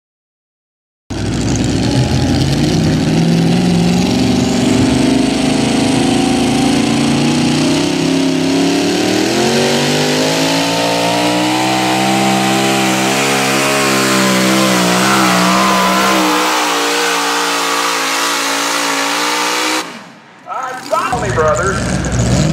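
Pro Modified pulling tractor's engine running flat out as it pulls the sled. The sound starts abruptly about a second in, the pitch climbs from about eight seconds in and holds high, then drops and cuts off shortly before the end.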